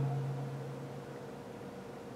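Quiet room tone with a low steady hum, fading a little about halfway through.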